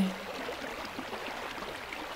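Steady flowing water of a stream, a continuous even rush with no distinct events.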